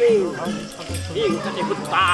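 A Bolan folk-theatre performer's voice declaiming in an exaggerated, swooping theatrical delivery, with pitch sliding down and arching. Short steady harmonium notes sound underneath, and a low dhol stroke comes about a second in.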